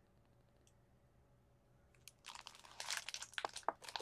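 Crinkling and rustling of Doorables mystery-box toy packaging being handled and opened, starting about two seconds in after a near-silent stretch.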